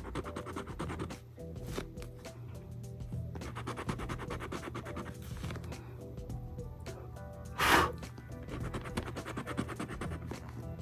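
A scratch-off lottery ticket's coating being scraped off with a small round scraper in quick, repeated short strokes, with one brief louder rasp about three-quarters through. Background music with steady held tones runs underneath.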